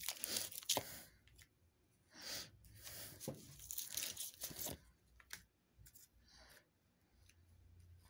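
A deck of tarot cards being shuffled by hand, faint: the rasp of card edges sliding against each other comes in several short spells, with a few light clicks later on.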